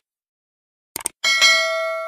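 A quick double mouse click about a second in, followed at once by a bright bell ding that rings on and slowly fades: the click-and-notification-bell sound effect of a subscribe-button animation.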